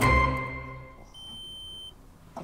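A held music chord dies away, then a single steady electronic beep sounds for just under a second. It comes from a SystemSURE Plus ATP hygiene swab meter signalling that its reading is ready.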